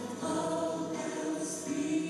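A group of voices singing a slow worship song together in long held notes.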